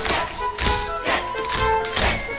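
Stage-musical orchestra music with the dancers' tap steps beating sharply in time with it.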